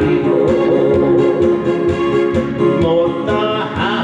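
A man singing live into a handheld microphone over a loud recorded backing track with a steady beat, amplified through a PA.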